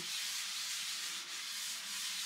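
A wet sponge with baking soda paste scrubbing a painted desk top, making a steady gritty rubbing hiss as it works at stubborn marks.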